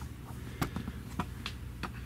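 Light clicks and taps, about seven scattered irregularly, from a handheld camera being handled and moved, over a steady low hum.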